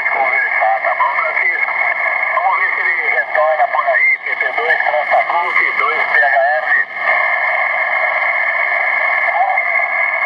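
Amateur radio receive audio from an Elecraft KX3 on the 40-metre band, played through the AlexMic's built-in amplified speaker: a distant, narrow, tinny voice on single-sideband mixed with band noise and steady heterodyne whistles. About seven seconds in the voice stops, leaving only the hiss and whistles.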